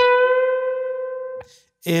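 A single electric guitar note on a Les Paul: the 12th fret of the B string bent up a half step to the minor third. It is picked once and rings steadily, fading for about a second and a half, then is cut off with a click as it is muted.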